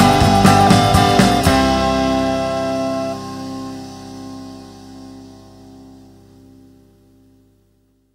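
The end of an indie rock song: the band plays on for about a second and a half, then a final held chord rings out and slowly fades away.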